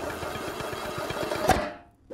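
Cartoon sound effect of feet scurrying at high speed to spin a jar lid: a fast, even rattling patter, cut off about one and a half seconds in by a single sharp pop as the lid comes free.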